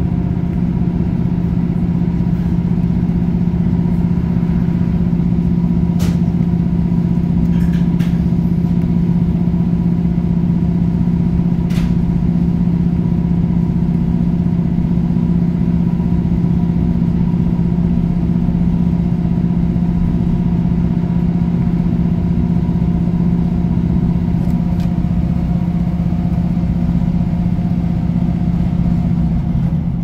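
Class 156 Super Sprinter diesel multiple unit's underfloor Cummins diesel engine running steadily under power as the train gets under way, heard from inside the passenger saloon as a low, even drone. A few faint sharp clicks sound in the first half.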